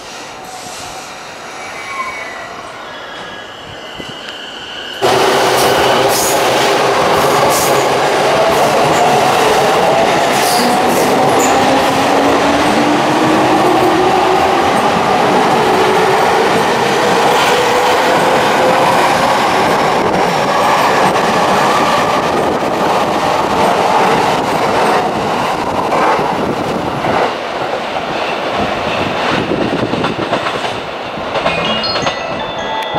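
JR East E231-500 series Yamanote Line electric train pulling away and passing close by, much louder from about five seconds in. Its traction motors whine, rising slowly in pitch as it accelerates, over rolling wheel-on-rail noise with clacks from the wheels.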